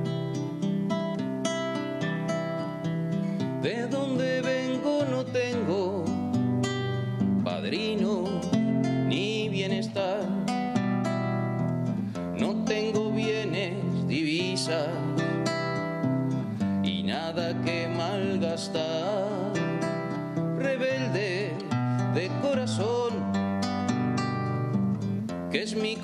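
Nylon-string classical guitar being fingerpicked in a song accompaniment. A man's voice sings over it in phrases from about four seconds in.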